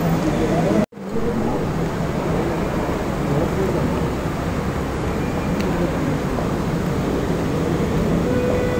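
Steady hubbub of many voices mixed with road traffic noise. All sound cuts out suddenly for an instant just under a second in.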